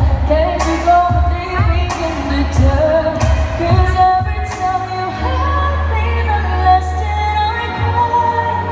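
A woman singing a pop song into a handheld microphone, holding long, gliding notes over an accompaniment with a strong bass line and a steady drum beat.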